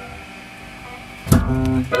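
A band ending a song: a fading keyboard chord dies away, then a sharply strummed electric guitar chord rings out a little past halfway, with another struck at the very end.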